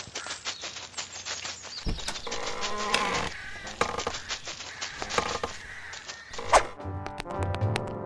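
A buzzing, like a fly or other insect, over soft background music.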